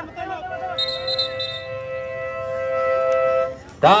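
A steady horn tone held for about three seconds, then a louder horn blast that swoops up in pitch just before the end, as play stops for a timeout in the last seconds of a basketball game.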